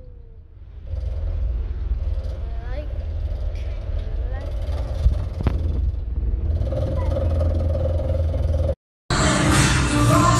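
Steady low rumble of a moving bus heard from inside the passenger cabin, with faint voices in it. About nine seconds in it cuts off abruptly and loud music with singing begins.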